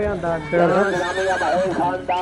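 A horse whinnies once, a high quavering call of about a second starting half a second in, over a man's voice.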